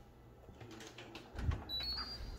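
Stainless steel upright freezer door being pulled open: a few light clicks, then a soft low thump about one and a half seconds in as the door seal lets go, followed by a brief high squeak or tone near the end.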